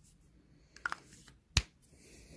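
Sharp clicks from a foundation bottle being handled to dispense a swatch: two light clicks a little under a second in, then one loud click about halfway through.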